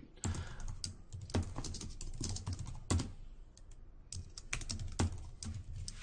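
Typing on a computer keyboard: irregular keystrokes, thinning out a little past halfway before a quicker run of keys.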